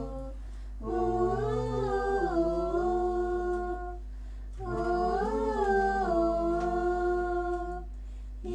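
Wordless a cappella humming in two long phrases of about three seconds each, the pitch gliding up and down, over a steady low hum.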